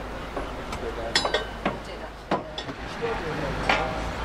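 About five sharp metallic clinks with a short ring, the last near the end and among the loudest, over a low background rumble and faint voices.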